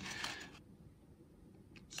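Near silence: quiet room tone as a voice trails off, with two faint clicks shortly before the next word.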